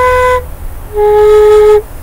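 End-blown flute in D diatonic minor playing two held notes: one ending shortly after the start, then after a brief pause a lower note held for nearly a second.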